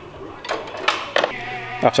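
A few sharp clicks or knocks of workshop handling, three in the second half, then a man starts speaking near the end.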